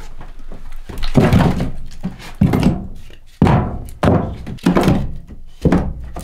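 Heavy hand-tool blows on timber: about six strikes at uneven intervals of roughly a second, each ringing out low for a moment after the hit.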